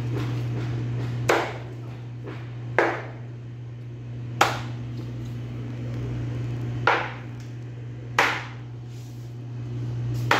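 Meat cleaver chopping raw chicken on a plastic cutting board: five sharp chops, irregularly spaced one to two and a half seconds apart, over a steady low hum.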